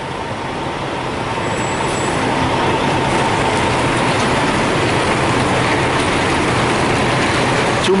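Semi-truck's diesel engine running as the tractor-trailer manoeuvres close by. It grows louder over the first few seconds, then holds steady.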